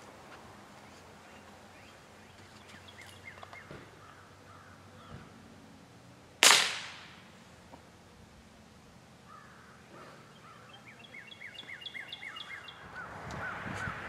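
A single shot from a Heritage Rough Rider .22 LR single-action revolver firing rat shot, a sharp crack about halfway through that dies away quickly. Birds chirp faintly before it and in a quick run of repeated notes near the end.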